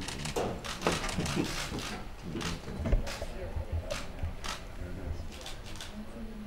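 Press camera shutters clicking at uneven intervals, a dozen or so short clicks, over the murmur of voices in a crowded room.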